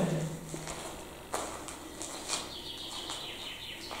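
Quiet room ambience with two light footsteps on the debris-strewn floor, about one and two seconds in, and a faint, drawn-out high bird call from the surrounding woods near the end.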